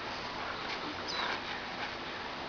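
Faint steady outdoor background noise with a brief high, falling chirp about a second in.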